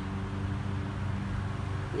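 A Buick SUV rolling slowly up a residential street: a low, steady engine hum with faint tyre noise.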